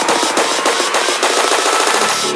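Psytrance track: a rapid, even run of repeated percussive hits with the low bass cut out.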